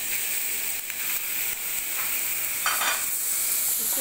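Beef pieces and sliced onions sizzling in hot oil in a pressure cooker pot, a steady frying hiss, with a brief louder rasp about three seconds in.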